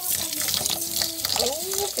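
Tap water running steadily into a metal pot of rice while a hand swishes the grains: rice being rinsed before cooking.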